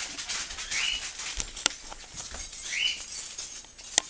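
A Pembroke Welsh corgi's claws clicking and pattering on a tiled floor as it walks, with two short rising squeaks, about a second in and again near the end.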